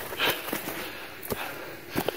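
A short, sharp breath through the nose about a quarter-second in, from a hiker crossing snow and brush. A few soft knocks follow later.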